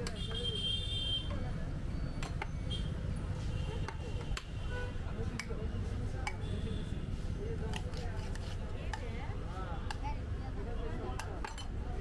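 Busy street background with a steady low traffic rumble and indistinct voices. Over it, scattered sharp metallic clicks and clinks come from a street-food vendor's steel cup against the steel serving tray, with a brief high ring near the start.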